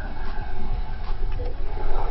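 Outdoor background noise: a steady low rumble with no speech.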